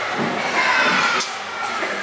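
A group of young children in an audience shouting and calling out together, reacting to a hand puppet popping up behind the performer.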